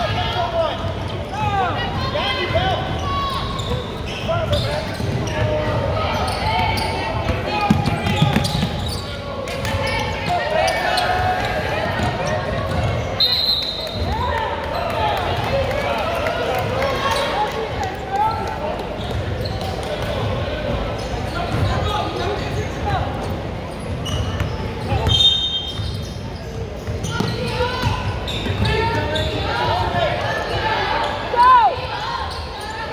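Basketball being dribbled and bouncing on a hardwood gym floor during a game, amid many overlapping voices of players and spectators calling out, echoing in the gym. Two short shrill sounds come through, about halfway and again late on.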